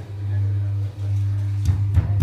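Electric potter's wheel motor humming steadily, dropping out briefly about a second in, with a couple of dull knocks near the end as the clay base is pressed and tapped down onto the wheel head.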